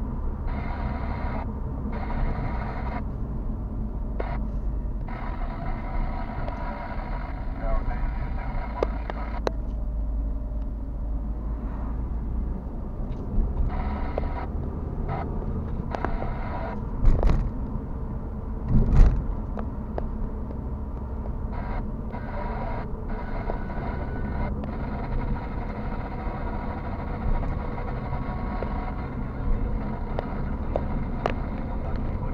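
Car cabin noise while driving slowly: a steady low rumble of engine and tyres on the road, with two louder thumps about two seconds apart around the middle, as the car jolts over bumps in the road.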